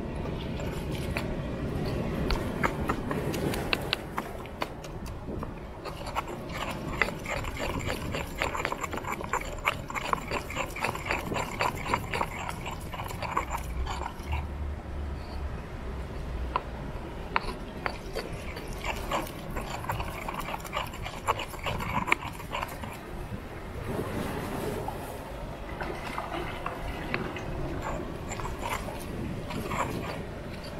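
Granite mortar and pestle grinding and pounding a wet jerk seasoning paste, stone on stone, with quick irregular knocks and scrapes.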